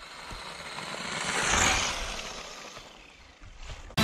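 Tamiya Dark Impact DF-03 electric RC buggy with a Torque-Tuned brushed motor driving over snow. Its motor and tyre noise swells as it comes close, is loudest about a second and a half in, then fades away.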